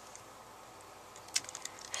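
Quiet room tone, then a few faint clicks in the second half as a plastic hook works against the plastic pegs and rubber bands of a Rainbow Loom.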